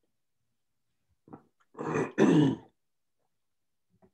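A person clearing their throat: two rough, loud bursts in quick succession about two seconds in, after a short faint sound just before.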